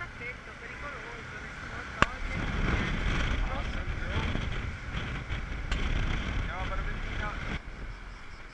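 Honda SH300 scooter riding in traffic, its engine running under wind noise on the microphone. A sharp click comes about two seconds in. The rushing noise then grows louder and drops away abruptly near the end.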